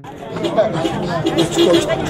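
People talking, more than one voice, over steady background noise.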